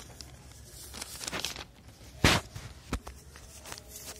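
Thin polythene carry bag crinkling as it is folded over and over by hand, with irregular crackles; a sharp crackle a little past halfway is the loudest, and a short click follows about a second later.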